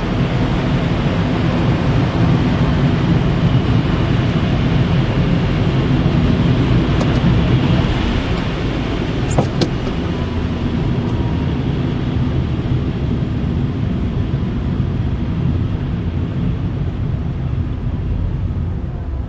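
Car driving on a wet, snowy road, heard from inside the cabin: a steady rumble of engine and tyre noise, with a short click about nine and a half seconds in.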